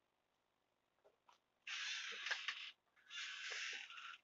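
Two harsh rasping noises of about a second each, with a few light clicks before and after, as yarn skeins and their packaging are handled on the table.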